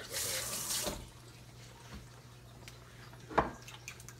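A brief rush of running water lasting about a second, then a single light click near the end, over a steady low hum.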